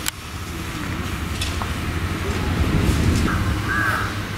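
A steady low outdoor rumble, with a crow cawing briefly near the end.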